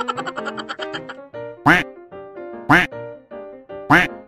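A duck quacking three times, short loud calls about a second apart, over light bouncy background music.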